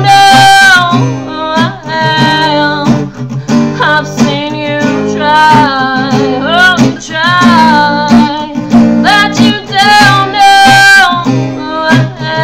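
A woman singing with long held notes over her own strummed acoustic guitar.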